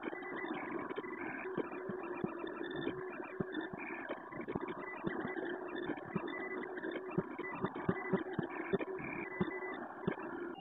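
Creality Ender 3D printer running: a steady mechanical whir from its stepper motors and fans, with frequent small irregular clicks.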